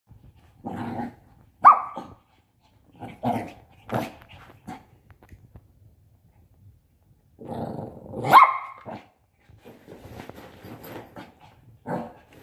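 Shih Tzu puppy barking and growling in play: a string of short yips and growls. The sharpest yips come about two seconds in and about eight seconds in, followed by fainter scuffling over the last few seconds.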